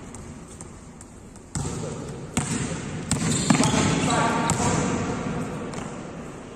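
Basketball bouncing on an indoor court floor several times, mixed with voices.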